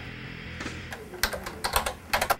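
Typing on a computer keyboard: a quick run of key clicks starting about halfway through, over faint background music.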